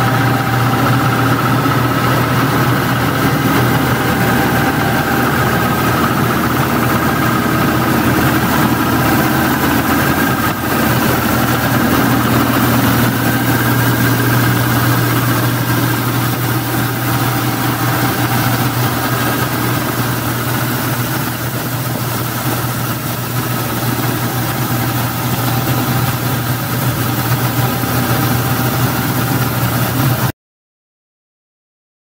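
Vacuum road-cleaning truck running steadily as it creeps along with its suction head down: a continuous low engine drone with a thin steady whine above it.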